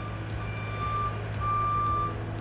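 Aerial work platform (boom lift) motion alarm beeping: one high tone repeating about once a second over the lift's steady low engine hum.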